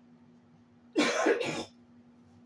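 A person's short double cough, about a second in.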